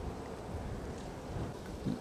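Steady wind rushing over the microphone of a camera carried along at riding speed, a deep, even rumble with no engine or motor tone.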